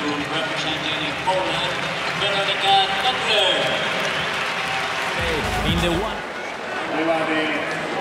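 Stadium crowd noise and applause under a man's speaking voice, with a brief low rumble about five seconds in.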